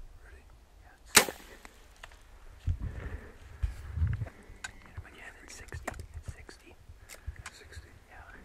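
A bow being shot: one sharp snap of the released string about a second in, followed by a few dull low thumps and scattered light clicks.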